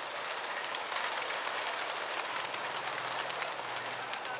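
Wings of a large flock of racing pigeons flapping all at once as they burst out of a transport truck's open crates: a dense, steady clatter of wingbeats.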